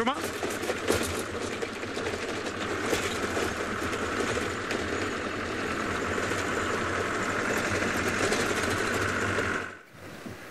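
Open safari vehicle driving along a rough grassy dirt track: the engine runs steadily and the bodywork rattles, with wind over the open cab. The sound cuts off sharply near the end.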